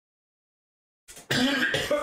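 A man coughs hard once, a little over a second in.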